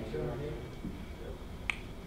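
Faint, quiet voices in the room, then a single sharp snap-like click near the end.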